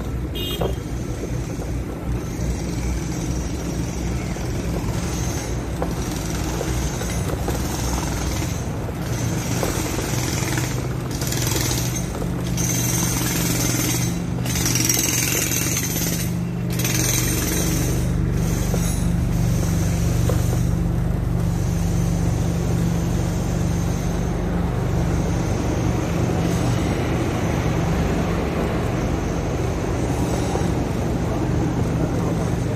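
Steady riding noise from a moving bicycle: wind on the microphone and the rumble of the ride. From about twelve seconds in, a low steady hum joins it and grows stronger.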